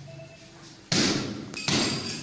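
A coconut smashed on the floor as a puja offering: two loud cracking impacts, the first about a second in and the second near the end, each trailing off briefly.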